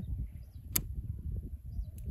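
A single sharp click about three quarters of a second in as the hazard-light switch on a Yamaha R15 V4's handlebar switch gear is pressed, over a steady low rumble.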